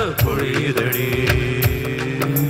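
A live band playing an instrumental passage in South Indian film-song style. A melodic line slides down at the start and then holds long notes over a steady bass, with a percussion beat of about three strikes a second.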